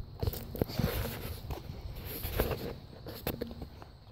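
Handling noise from a handheld camera being carried along a sidewalk: irregular soft knocks and rustles, with footsteps.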